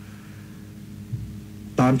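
Steady low electrical mains hum, with a man's voice starting again near the end.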